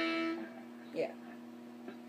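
An electric guitar two-note chord on the ninth fret of the third and second strings, ringing and fading out over the first half-second and then lingering faintly.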